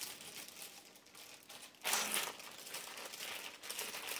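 Crinkling and rustling of a hardware parts packet being rummaged through in search of lock washers, louder about two seconds in.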